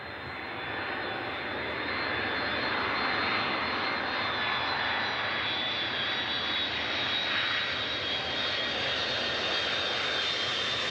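Boeing 747's four turbofan engines on landing approach: a steady jet rush with a high fan whine over it, growing louder over the first two seconds and then holding.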